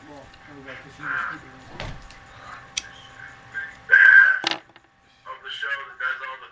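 Indistinct voice sounds on a talk-radio recording, with a short loud cry about four seconds in.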